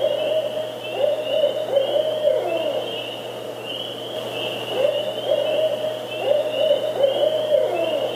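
Barred owl giving its 'who cooks for you' hooting call twice. Each series of hoots ends in a drawn-out hoot that slides down in pitch.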